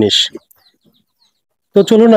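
A voice wailing in grief: a wavering, sobbing phrase breaks off just after the start, and after a pause of over a second the wailing starts again loudly near the end.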